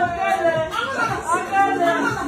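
Several people's voices talking and calling out together, with pitch rising and falling.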